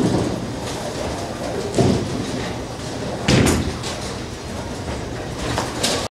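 Bowling alley din: a steady low rumble of balls rolling and pinsetter machinery, broken by loud sudden crashes and clatter about two seconds in and again about three and a half seconds in, with a sharper knock just before the end.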